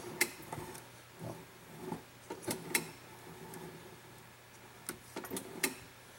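Hand-cranked coil winder turning, winding 15-gauge copper magnet wire off its spool onto a wooden coil form: quiet, with scattered soft clicks and knocks from the mechanism.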